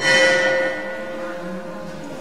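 Metal bell struck once, its ringing tones fading over about a second.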